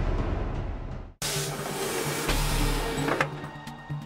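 Trailer music: heavy drum hits that cut off abruptly about a second in, followed by a loud rushing noise lasting about two seconds over a steady low drone.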